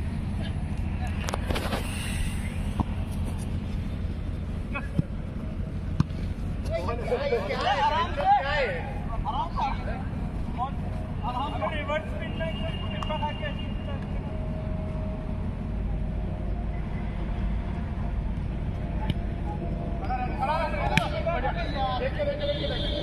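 Football players shouting to each other in the distance during a match, in several short bursts over a steady low rumble. A few sharp knocks are heard.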